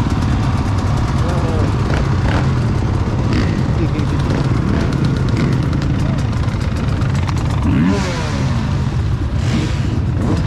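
Dirt bike engines idling and running at low speed, a steady low rumble throughout.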